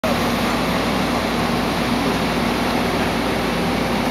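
Tracked excavator's diesel engine idling steadily.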